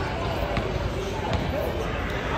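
Indistinct chatter of people talking in the background, with a few short sharp thumps, one about half a second in and another a little past the middle.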